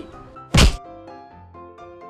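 A single heavy thump about half a second in, followed by light background music of short plucked or piano-like notes.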